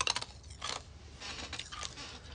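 Handling noise close to a phone's microphone: a quick run of light clicks at the start, more scattered ticks, and a short rustle near the end.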